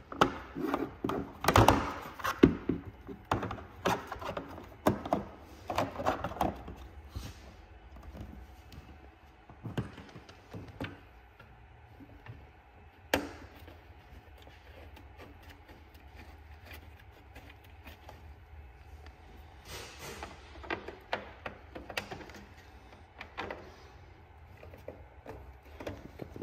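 Scattered clicks, taps and knocks of snowmobile rear plastics and tail-light wiring being handled, thickest in the first few seconds, with one sharp click about halfway through and a few more later on.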